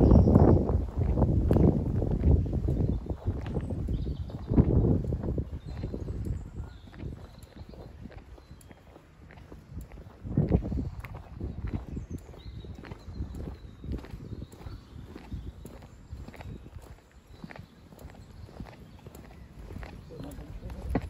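Footsteps walking at a steady pace on a paved path, a run of regular light clicks, under heavy low rumbles on the microphone that are loudest at the start, about five seconds in and about halfway through.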